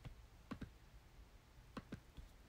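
Faint clicks: one click at the start, then two quick double clicks about a second apart.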